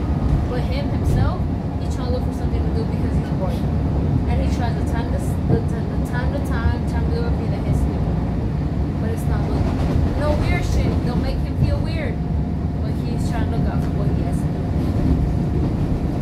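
Interior of a CTA 2600-series rapid-transit car running along the line: a steady low rumble of wheels and motors, with a faint steady tone through the second half. Passengers talk in the background.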